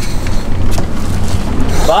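Steady low rumble of a boat's idling engine, with wind on the microphone.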